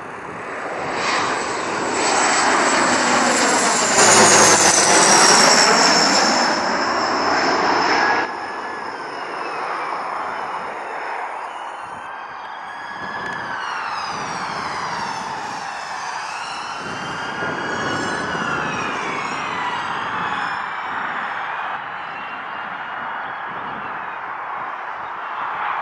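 Bombardier Dash 8 Q400 turboprop landing on one engine, the other propeller feathered; the single working engine and propeller run loudest about four to eight seconds in, with a falling pitch as the aircraft passes close. The sound drops sharply about eight seconds in, then goes on quieter, with tones sweeping up and down as the airliner comes down onto the runway.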